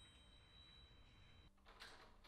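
Near silence: faint steady high tones that cut off abruptly about one and a half seconds in, giving way to quiet room tone with a faint short sound near the end.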